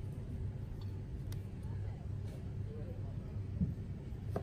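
A few faint taps of a knife cutting a tomato on a plastic cutting board, over a steady low motor hum.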